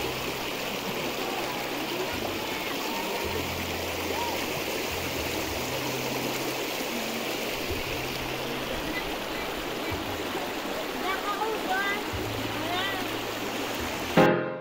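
Shallow rocky river running steadily over and between stones: a constant, even rush of flowing water.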